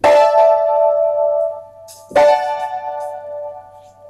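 Piano playing two held chords, the second struck about two seconds after the first, each left to ring and fade: the harmony the other women's parts sing underneath the first soprano line.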